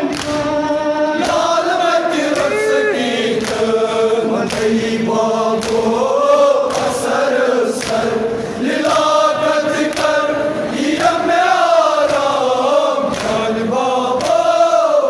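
Group of men chanting a Kashmiri noha (Muharram mourning lament) in unison, led by a singer on a microphone. Sharp slaps recur about once a second in time with the chant, from mourners beating their chests (matam).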